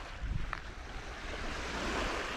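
Small waves lapping and washing up a sandy shore, the wash swelling toward the end, with wind rumbling on the microphone.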